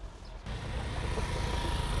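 Motor scooter's small engine running steadily, a low hum that starts about half a second in.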